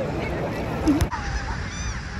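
Gulls calling, a few short cries with an arching pitch in the second half, after a sharp click about a second in; a steady rumble of wind or surf runs underneath.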